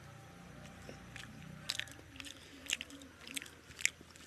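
Close-up chewing of a mouthful of chicken biryani, with a string of short mouth clicks starting about a second in, the loudest near the end.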